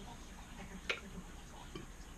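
A single short click a little under a second in, over quiet room tone.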